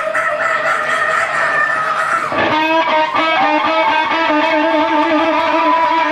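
A live rock band with amplified electric guitar. About halfway through, a long lead note comes in and is held with a wavering, vibrato pitch.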